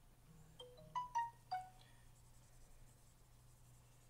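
Dry-erase marker squeaking on a whiteboard while drawing: a handful of short, high squeaks at different pitches, bunched between about half a second and two seconds in.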